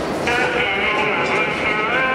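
Several voices starting suddenly in a held, wavering group call, over crowd noise.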